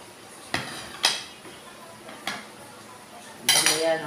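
A large kitchen knife cutting through a soursop (guyabano) on a plate. The blade knocks against the plate in three sharp clicks, at about half a second, one second (the loudest) and just past two seconds. Near the end there is a louder clatter as the knife is set down, running into a woman starting to speak.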